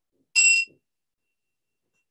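A small bell rung once: a short, bright ring about a third of a second in that stops quickly.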